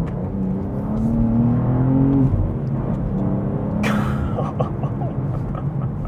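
BMW M2's twin-turbo straight-six under hard acceleration, heard from inside the cabin: the engine note climbs for about two seconds, drops with an upshift, then pulls again. There is a short burst of noise about four seconds in.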